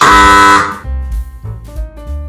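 Loud, buzzy blast from a level-crossing warning horn, lasting well under a second before cutting off. Background music with bass and piano notes follows.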